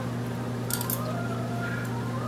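A short slurp as food is sipped from a spoon, a little under a second in, over a steady low hum.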